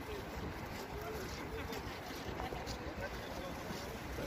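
Wind rumbling on the microphone over outdoor crowd ambience: faint, indistinct voices and the crunch of footsteps on packed snow, roughly two steps a second.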